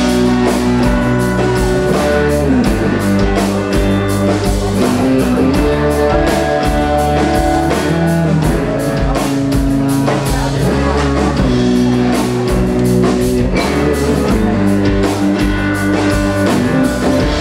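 A live rock band playing an instrumental passage without vocals: guitars, among them a resonator guitar, over a drum kit.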